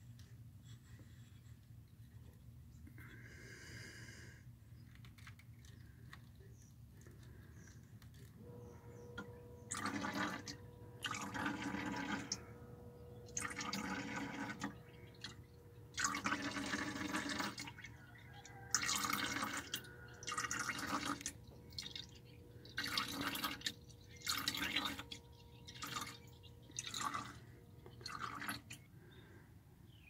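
An HHR's electric fuel pump, jumped at its relay, starts a steady whine about eight seconds in and pushes fluid out through the fuel rail in irregular gushes that splash into a plastic jug. The tank is being drained of contaminated fuel that is mostly water.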